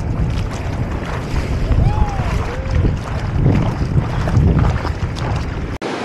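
Wind buffeting and water sloshing on an action camera's microphone out on the ocean, a heavy uneven rumble. It cuts off suddenly near the end, leaving a softer steady surf hiss.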